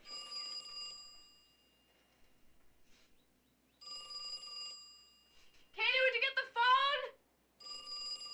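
Telephone bell ringing: short rings about four seconds apart, each fading out. Between the second and third rings, a high voice sounds twice.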